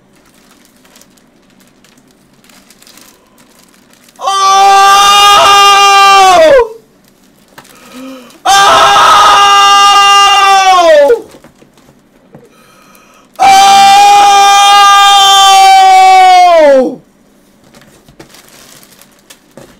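A young man yelling three long, loud, high-pitched excited cries, each held on one pitch and then dropping as it trails off.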